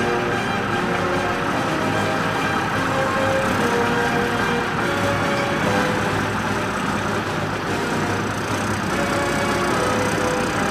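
Diesel engine of a Scammell Highwayman lorry running steadily as it drives slowly by, with music playing over it throughout.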